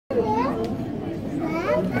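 Children's voices chattering and calling out, high-pitched and overlapping, throughout.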